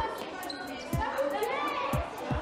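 Children's high voices and laughter, with deep thumps about once a second in a steady beat.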